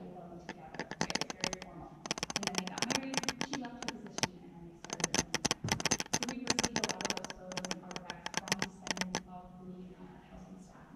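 Footsteps of several people on an old hardwood floor: quick, irregular clacks and knocks in clusters, fading out near the end, with faint voices underneath.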